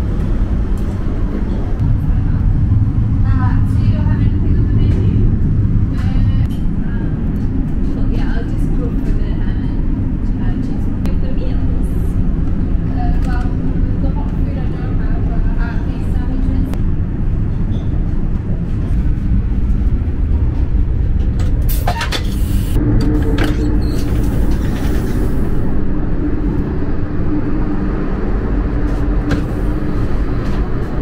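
Steady low rumble of a Eurostar high-speed train running, heard from inside the carriage, with faint passenger voices in the background. About 22 seconds in comes a brief loud hiss, followed by a steady hum of a few tones.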